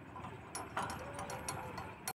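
Irregular metallic clicking and rattling from a lineman's hardware on a 220 kV transmission line's conductors, busiest from about half a second in. A faint squeak is heard in the middle.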